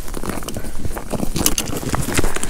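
Snow boots crunching on snow-crusted lake ice in quick, irregular footsteps, over a low rumble.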